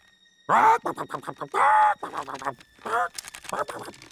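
Three short, wordless vocal sounds from a cartoon character, the second held a little longer with a wavering pitch. Light clicks and scratchy noises fall between them.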